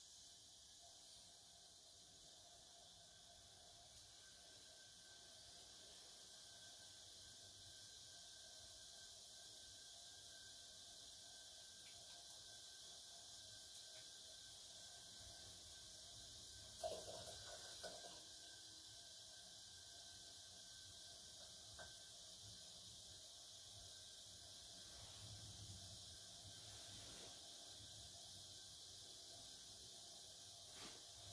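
Near silence: steady hiss of room tone, with one brief soft knock about seventeen seconds in.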